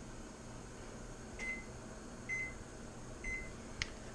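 Three short keypad beeps from a stove's electronic control panel, about a second apart, as a three-minute timer is set, followed by a single sharp click near the end. A faint steady hum runs underneath.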